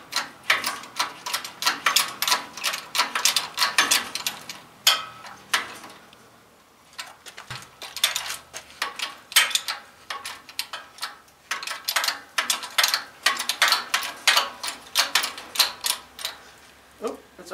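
12-ton hydraulic shop press being pumped by hand: a quick run of sharp metallic clicks from the pump handle, with a short pause about five to seven seconds in, as the ram forces a press-fit wrist pin out of a connecting rod.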